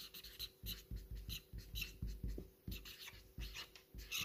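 Chisel-tip felt marker writing on paper: a faint run of short, quick pen strokes, several a second, as letters are drawn.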